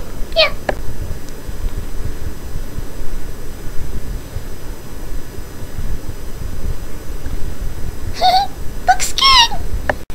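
Low rumble for several seconds, then a few short, high-pitched meow-like calls that curve up and fall, about eight to nine and a half seconds in.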